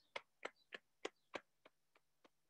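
Hands tapping along the legs in a steady rhythm, about three light taps a second, growing fainter near the end.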